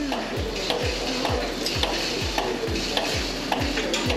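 Milking machine running on dairy cows: the pulsators give a steady, even rhythm of short pulses, several a second, over the steady hum of the vacuum line, with faint clicks between.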